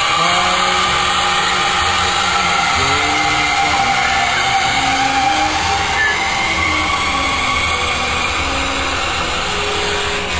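Toilet running after a flush, its tank refilling: a loud, steady hiss of water with faint whining tones that slide slowly up and down.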